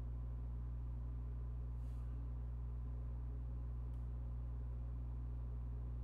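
Steady low electrical hum from the recording setup, with a faint scratch of a pencil on paper about two seconds in and a tiny click near four seconds.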